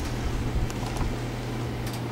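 A steady low hum with background hiss and a couple of faint clicks.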